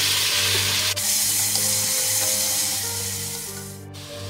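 Sliced onions sizzling in hot oil in a pressure cooker, a steady hiss that slowly fades toward the end.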